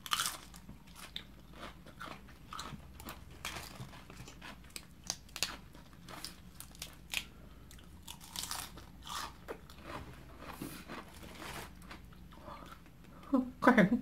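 A person biting and chewing crisp raw green vegetables: a string of short, irregular crunches throughout.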